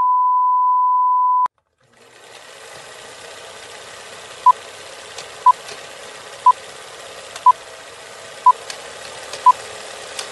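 A steady, single-pitched test tone that cuts off about a second and a half in. After a brief silence, a film-leader countdown sound effect: steady projector-like hiss with faint crackle clicks and a short beep once every second.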